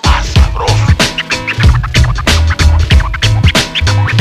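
Hip hop beat with a DJ scratching a record on a turntable: quick back-and-forth scratch strokes over a repeating heavy bass line.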